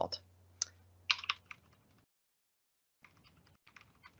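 Typing on a computer keyboard while entering a password: a handful of scattered keystrokes in the first second and a half, a pause, then a few more near the end.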